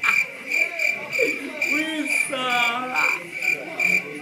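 Regular high-pitched chirping, about two chirps a second, like crickets, with a voice rising and falling in wavy swoops through the middle.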